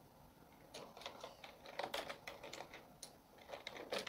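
Typing on a computer keyboard: quick runs of key clicks, starting about three-quarters of a second in.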